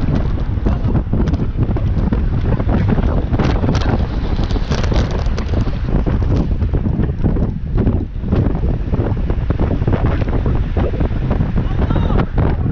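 Heavy wind buffeting the microphone of a camera moving with a group of road bikes: a dense, steady low rumble, with scattered sharp clicks and rattles in the first half.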